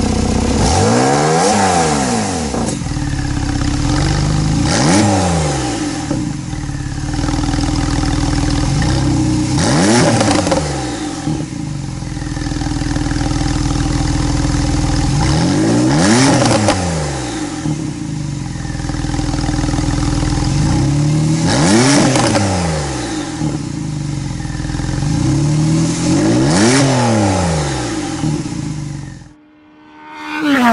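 2018 Porsche 911 Targa 4S's twin-turbo flat-six with sport exhaust, idling and revved six times, every few seconds. Each rev rises and falls back to idle over about a second and a half. The sound cuts off near the end.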